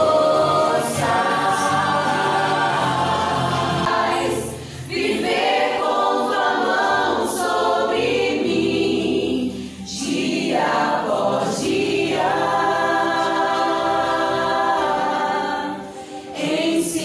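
Choir singing a worship song in long held phrases, breaking briefly twice between phrases.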